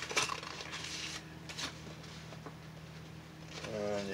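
Paper envelope being handled and opened by hand: a few light clicks and crinkling scrapes in the first second and a half, then faint rustling.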